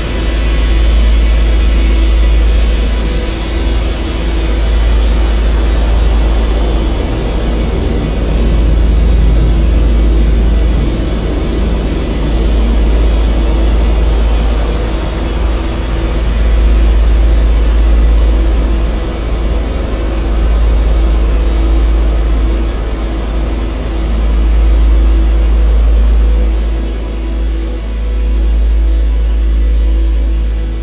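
Electronic bass music: a loud, steady, deep bass drone under a dense sustained wash of sound that swells and dips slowly, with no clear beat.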